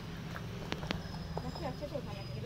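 Faint, distant voices over a steady low hum, with a few sharp clicks in the first second.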